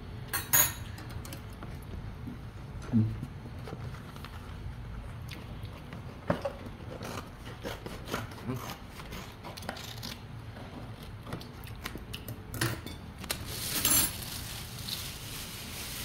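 Spoons, forks and chopsticks clinking and scraping against ceramic plates and bowls during a meal, as scattered short taps, the loudest about half a second in and near three seconds, over a steady low hum.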